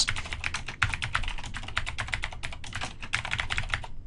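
Typing on a computer keyboard: a quick, uneven run of key clicks that stops just before the end.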